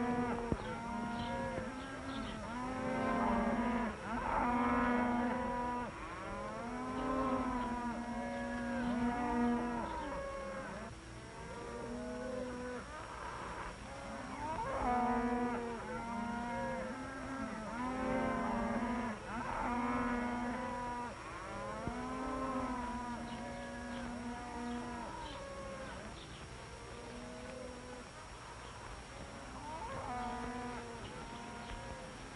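Cattle lowing: many long moos overlapping one after another, growing fainter in the last few seconds.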